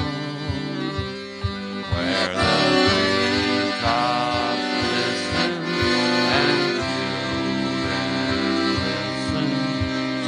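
Accordion playing a tune, with a steady bass beat underneath.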